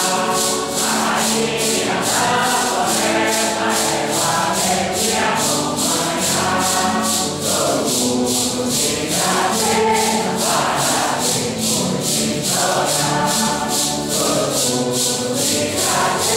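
Santo Daime congregation singing a hymn together, men's and women's voices in unison, over maracas shaken in a steady beat of about two strokes a second.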